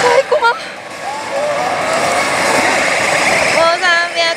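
Loud, steady din of a pachinko parlor, with the electronic sound effects and voice clips of an Oshi! Banchou ZERO pachislot machine over it. There is a brief pitch-sliding effect about half a second in, and a rising-and-falling voice-like sound near the end.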